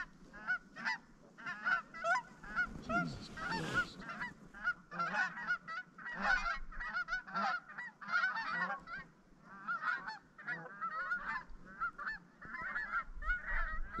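A flock of lesser Canada geese calling, many short overlapping honks one after another. A brief rustle comes about three seconds in.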